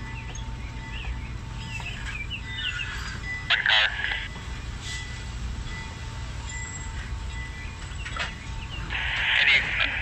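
Passenger train cars rolling slowly past, a steady low rumble, with birds chirping about two to three seconds in.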